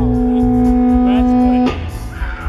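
Live blues band playing: a long sustained note rings over bass and drums and cuts off near the end.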